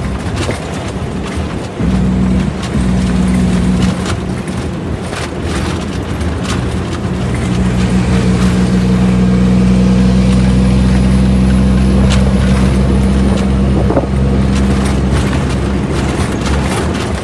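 Shacman F3000 truck's diesel engine heard from inside the cab while driving: a steady low drone whose pitch shifts a few times in the first eight seconds, then holds, with light clicks and rattles throughout.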